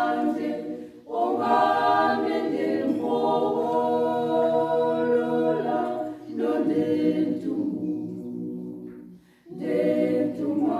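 A small women's choir of six singing a cappella in harmony, in long held phrases with brief breaths about a second in and near six seconds. A phrase dies away near the end before the next one begins.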